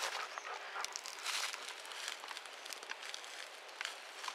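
Faint rustling of a dog shifting about in grass and dry leaf litter, with a few soft crackles, over a steady outdoor hiss.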